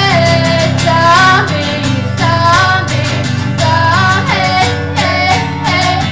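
A woman singing long, sliding notes live, with an acoustic guitar strummed beneath her.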